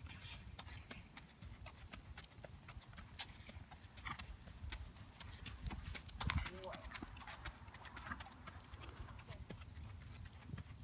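A horse's hooves on a gravel riding surface at a walk: an uneven run of crunching footfalls.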